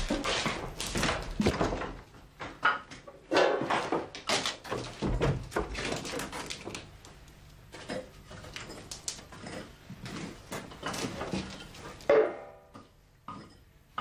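Irregular knocks, thuds and clatter of movement, with one short, loud vocal sound about twelve seconds in.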